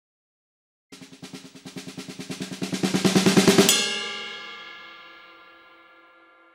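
A fast drum roll of about ten strokes a second that builds steadily louder for nearly three seconds, then stops on a ringing hit that fades away slowly.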